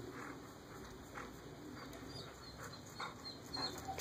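Faint sounds of two dogs at play, a few soft short noises spread through, with a string of faint high chirps in the second half.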